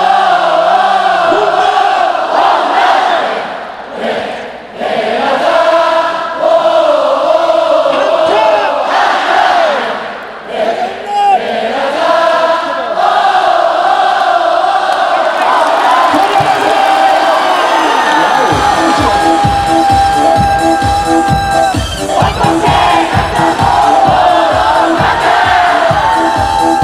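Large baseball crowd chanting a cheer song in unison with unamplified voices. About 18 seconds in, amplified dance music with a steady thumping beat, about two beats a second, starts over the crowd.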